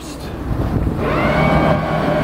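Electric thruster on a Cutwater 30 cutting in about a second in and running with a steady whine over a low rumble.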